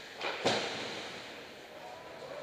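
A brief scrape of skate blades on ice, then a sharp knock about half a second in that rings out in the echoing ice rink.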